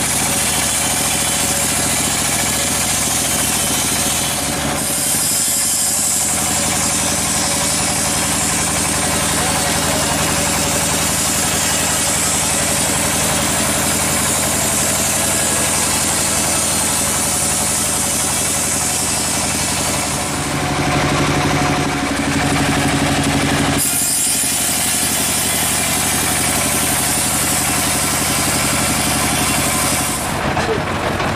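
Band sawmill running, its engine steady while the band blade cuts lengthwise through a teak log with a continuous high sawing hiss. The sound shifts a few times, with a louder, lower hum for a few seconds about two-thirds of the way through.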